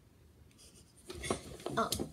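About a second of near-quiet, then soft scraping and rustling handling noises as things on a makeup vanity are reached for and moved about.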